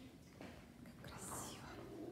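A brief, faint whisper about a second in, over quiet room tone.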